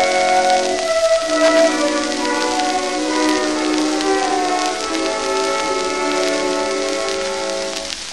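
Instrumental introduction of a 1916 Columbia 78 rpm shellac record, thin and mid-range with almost no bass, played back with steady crackle and hiss of surface noise.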